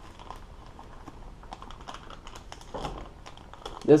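Plastic soft-bait package being handled and opened: a scatter of small crinkles and clicks from the bag.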